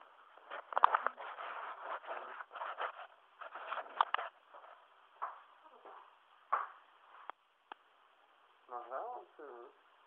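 Indistinct talking in a small room on a low-quality recording, dense and choppy in the first few seconds, with a couple of sharp clicks midway and a higher-pitched voice speaking near the end.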